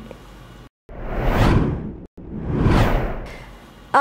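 Two whoosh sound effects of a news-bulletin transition sting, one after the other, each swelling up and fading away over about a second.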